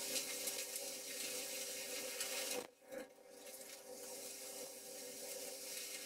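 Dust collector running, pulling air and wood chips through a Thien-baffle chip separator: faint, steady rushing air over a low motor hum. The sound cuts out briefly about two and a half seconds in, then comes back.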